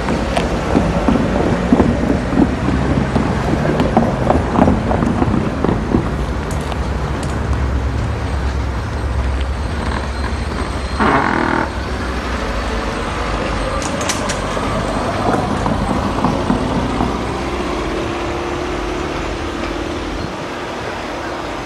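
Freight train of tank cars rolling away, a steady rumble with wheel clatter that eases off toward the end. About eleven seconds in there is a short toot lasting under a second.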